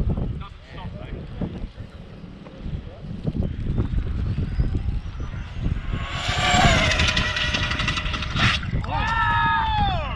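Electric RC speed-run car running down a wet runway: its motor whine climbs steadily in pitch as it accelerates. It then passes close with a burst of hissing spray as it hits a puddle, the whine falling in pitch as it goes by.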